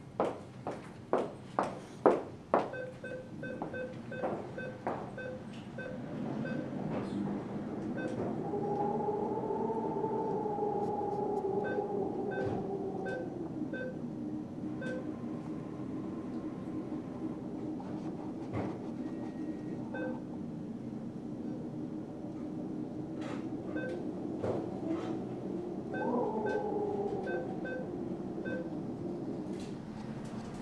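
Cash machines in use: short runs of keypad beeps as keys are pressed, and a machine whir that rises and wavers for several seconds, then comes again later with a falling pitch. Hard-soled footsteps click quickly on the tiled floor at the start.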